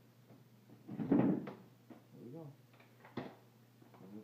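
Xtend & Climb 780P aluminium telescoping ladder being collapsed: a loud sliding clatter about a second in as the sections come down, then a single sharp click near the end as a section closes.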